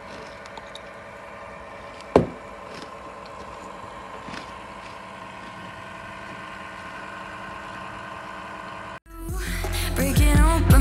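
Crisp fried Ghanaian chips being bitten and chewed: a few light crunches and one sharp, loud crack about two seconds in, over a steady hum. The sound cuts out briefly near the end and music fades in.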